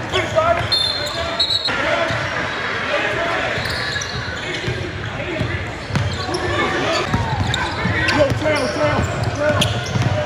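Live sound of an indoor basketball game: the ball dribbling on a hardwood court, with players and spectators talking and calling out in the echoing gym. A short high squeak comes about a second in.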